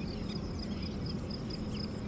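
Quiet outdoor background: a steady low rumble under a faint, continuous high-pitched chirring typical of insects.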